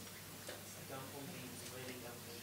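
Faint off-microphone voice in a small room over a steady low electrical hum, with a light click about half a second in.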